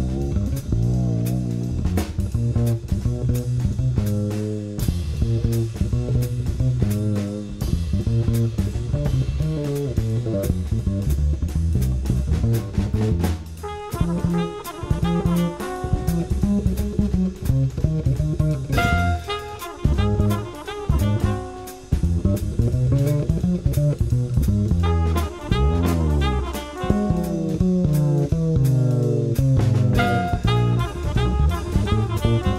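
Studio jazz recording by a quartet of double bass, drums, piano and horn. The double bass plays prominent moving lines under the drum kit's cymbals and drums. Busier higher melodic lines join from about halfway through.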